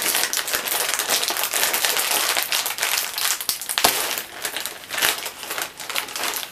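Plastic snack bag crinkling loudly as it is handled and pulled open, with one sharp snap about four seconds in.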